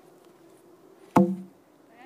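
A heavy wooden log, pushed over from upright, lands on a dirt path about a second in: one loud thud with a brief hollow ring.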